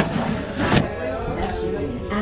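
A plastic airliner cabin window shade on a Boeing 747 slid up by hand, a short rasping slide that ends in a clack as it hits its stop under a second in. Background voices murmur underneath.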